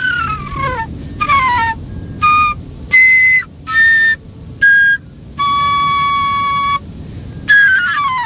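Background music on a high, whistle-like wind instrument: a few descending pitch slides, then short separate notes and one long held note a little past halfway.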